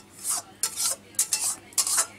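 A spatula stirring and scraping around the inside of a stainless-steel pan, in a run of quick scraping strokes, several a second.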